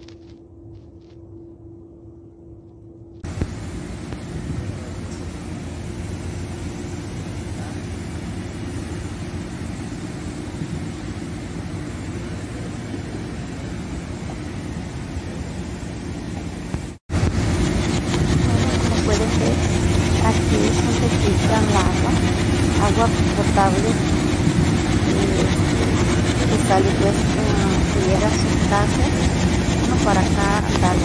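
Water running out of pump discharge hoses into a flooded pit, a steady rushing noise that starts about three seconds in over a faint hum. After a break a little past halfway, a louder steady rumble follows with faint voice-like chirps over it.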